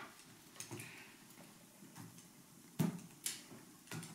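Tarot cards being handled and laid down on a wooden table: a few faint ticks, then several louder short taps in the last second or so.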